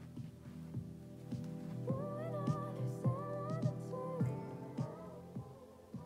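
Music playing quietly from a tower loudspeaker that has no amplifier wires connected. The signal reaches its drivers only through magnetic crosstalk between steel-core inductors in the crossover.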